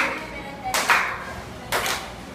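A group clapping hands together on a steady beat, three claps about a second apart.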